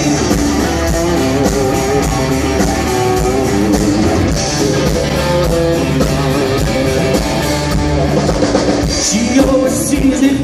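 Country rock band playing live at full volume: electric guitars, bass guitar and drum kit.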